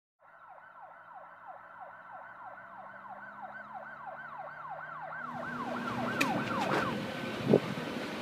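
Emergency-vehicle siren in a fast yelp, sweeping up and down about three times a second and growing louder. About five seconds in, a rushing noise joins it. The siren stops near the end and a brief loud bump follows.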